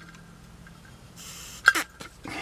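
A short hiss of breath blown by mouth into the fuel inlet of an upside-down Holley 1904 carburetor, testing whether the float needle seals against its seat, followed by a brief sharp mouth sound. The needle holds well enough that only a little air gets through.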